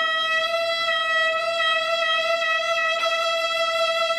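A violin holding one long, steady high note, bowed without vibrato.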